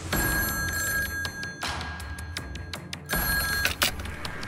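A telephone ringing twice, each ring a steady high tone, the second ring shorter, over background music.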